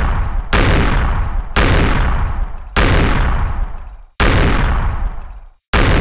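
Five heavy boom sound effects, one every second or so, each hitting suddenly at full loudness and dying away before the next. They are edited in to mark the ball strikes of powerful shots.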